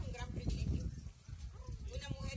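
A voice over a PA loudspeaker, heard from among the audience, with a low rumble on the phone's microphone underneath.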